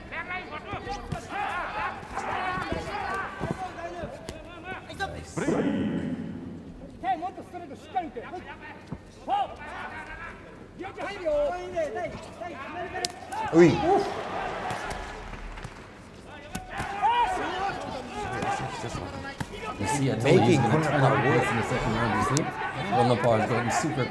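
Men's voices calling and talking in a large hall through most of it, loudest about two-thirds of the way in and again near the end, with scattered sharp slaps of kicks and punches landing in a kickboxing bout.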